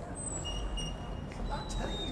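A steady low rumble of urban background noise, with faint, indistinct voices.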